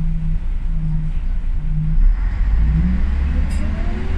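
Interior of an Ikarus 280 articulated bus under way: steady low diesel and road rumble, and from about two seconds in a whine from the ZF gearbox and axle that rises in pitch as the bus gathers speed.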